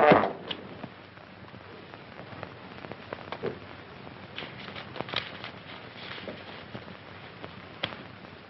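A trombone blast cuts off just after the start, followed by the steady crackle and hiss of an old optical film soundtrack with a few scattered faint clicks.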